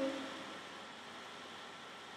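Steady faint hiss of room tone and recording noise, with no music or other sound. The tail of a sung note dies away right at the start.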